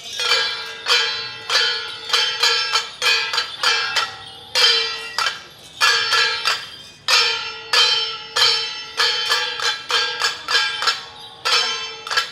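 Ritual procession percussion: struck metal, gong-like, hit repeatedly in an uneven rhythm of about two to three strokes a second, each stroke ringing on at a fixed pitch.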